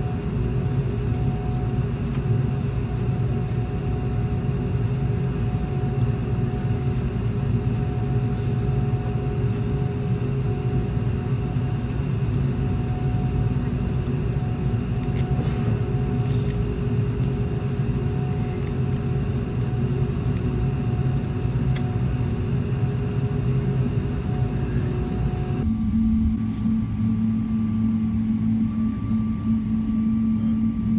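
Steady low rumble and hum inside an Airbus A330's passenger cabin on the ground, with a few faint steady tones over it. Near the end it switches suddenly to a different steady cabin hum with a higher tone.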